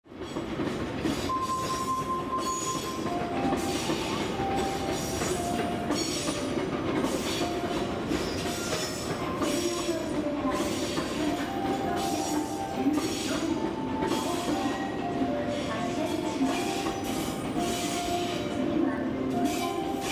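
E7 series Shinkansen train noise at the platform: a steady rumble with short tones that step up and down in pitch over it.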